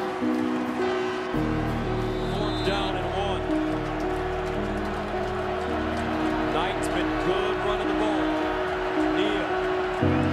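Background music of held, sustained notes, joined about a second in by a deep, steady bass layer.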